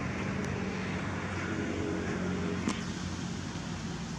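Steady low rumble of a motor vehicle's engine, with one sharp click about two and a half seconds in.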